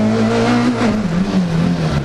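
Rally car engine heard from inside the cabin, running hard at a steady pitch, then the revs dropping about a second in and settling lower as the car heads into a bend.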